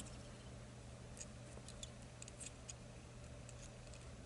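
Faint scattered light ticks and clicks of fly-tying thread being wrapped by hand over pheasant tail fibres on a hook held in a vise, with a soft click at the start, over a low steady hum.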